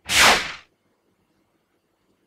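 A whoosh transition sound effect: one quick swish that swells and dies away within about half a second, its high end fading first.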